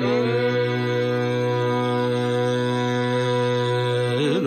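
Carnatic classical male voice settling from a slight glide into one long, steady held note in raga Darbar.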